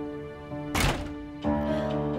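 Background drama music with sustained notes; a door shuts with a single thunk just under a second in, and a new low note enters in the music soon after.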